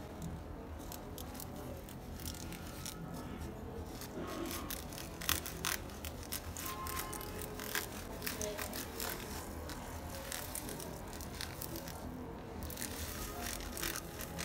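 Small scissors snipping at a plastic piping bag full of foam beads, with the bag crinkling in the hands: scattered light clicks and rustles.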